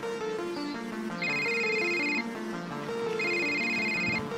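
A phone ringing twice, each electronic ring about a second long with a second's pause between, over background music with a repeating stepped melody.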